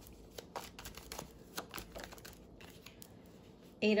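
A deck of tarot cards being shuffled by hand: soft, irregular clicks and rustles of cards sliding against each other.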